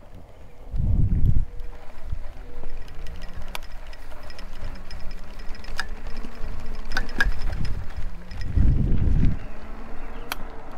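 Folding e-bike being ridden over bumpy grass: wind buffets the handlebar camera's microphone in heavy rumbles about a second in and again near the end. Scattered sharp clicks and rattles come from the bike as it jolts, over a faint steady hum.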